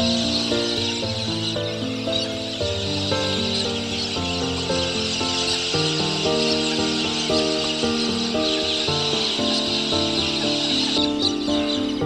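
A large flock of parrots calling together in a dense, continuous chorus of screeches, fading near the end, heard over background music of evenly paced melodic notes.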